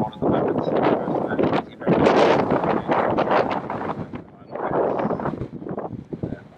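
Wind buffeting the microphone in rough gusts, loudest about two seconds in, dipping briefly a little past four seconds before picking up again.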